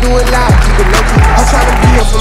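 Hip hop backing track with no vocals: a steady beat of deep bass kicks that drop sharply in pitch, about one every two-thirds of a second, under a sustained melody.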